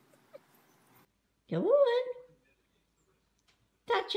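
A dog's whine: one cry about a second and a half in that rises sharply in pitch and then holds briefly. A short burst of sound comes at the very end.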